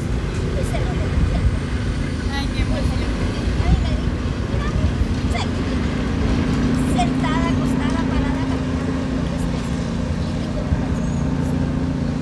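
A steady low rumble with a faint held hum, under faint quiet voices now and then.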